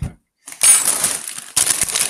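A Doritos crisp bag of metallised plastic crinkling loudly as it is handled close to the microphone, in two stretches of about a second each.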